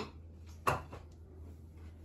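A single short knock, like a dish or utensil set down on a kitchen counter, about two-thirds of a second in, over a steady low hum.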